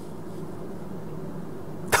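Steady low background hum of the room in a pause between spoken words; a sharp click-like onset near the end as speech starts again.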